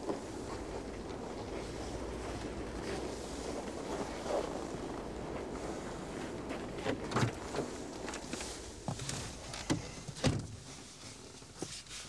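Footsteps over a steady outdoor hum, then from about halfway a run of clicks and knocks as a car door is opened, a man climbs into the seat and the door is pulled shut near the end.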